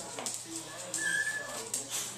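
A boxer dog gives one brief, thin, high-pitched whine about a second in, while playing.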